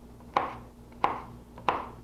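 Chef's knife dicing green chilies on a cutting board: three sharp chops about two-thirds of a second apart.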